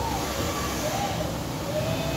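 Robot arm's joint servo motors whining as the arm moves, in a few short whines that rise and fall in pitch as each joint speeds up and slows down, over a steady workshop hum.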